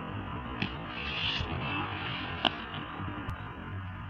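Scuffling of two barefoot karate practitioners during a takedown, bodies and gi moving over concrete, with one short sharp knock about two and a half seconds in, over a low steady hum.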